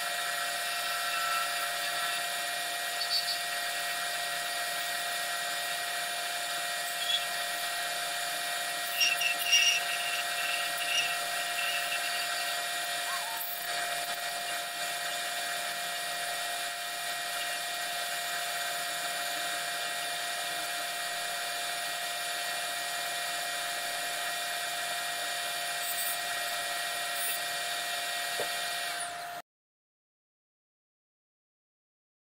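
Wood lathe running steadily with a high whine while a turning tool cuts a small spinning spindle, with a few short squeaks about nine to eleven seconds in. The sound cuts off suddenly near the end.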